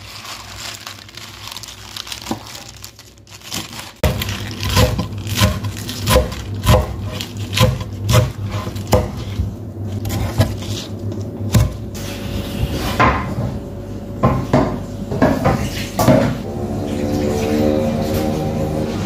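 Kitchen knife chopping spinach stems on a wooden cutting board: irregular sharp chops, about two a second, starting about four seconds in.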